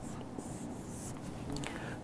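Faint scratching of a marker pen on a whiteboard as a word is written and a box drawn around it, over quiet room tone.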